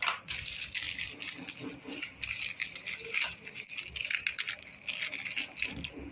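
Hands handling plastic makeup packaging and small containers: a run of light clicks, crinkles and rattles, with bangles clinking on the wrists.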